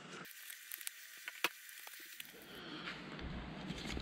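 Faint rustling and crackling of a paper pattern being handled and pressed around a metal tube, with small clicks and one sharp click about a second and a half in.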